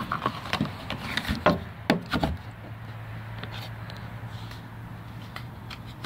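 Handling of a pistol and a molded thermoplastic holster: a series of sharp clicks and knocks in the first couple of seconds as the gun is picked up and worked into the holster. A steady low hum follows for about three seconds.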